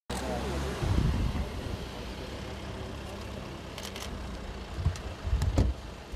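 A car pulling up, with low engine and road rumble and a few sharp clicks about two-thirds of the way through.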